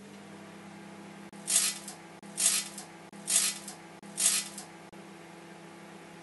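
Microwave oven running with a steady electrical hum. Four short bursts of crackling, about a second apart, come as the CD inside arcs and sparks in the microwaves.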